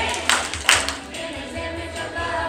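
A group of young children singing together, with two sharp hand claps in the first second.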